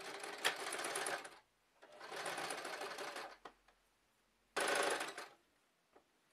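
Janome electric sewing machine stitching fabric in three short runs with pauses between them. The last run is the shortest and the loudest, and starts abruptly.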